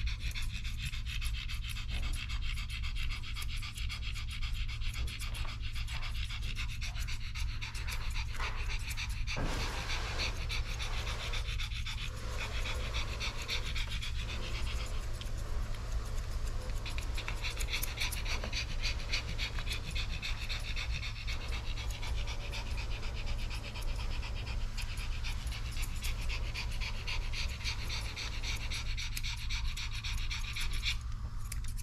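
Pomeranian panting rapidly and steadily, with a steady low hum underneath.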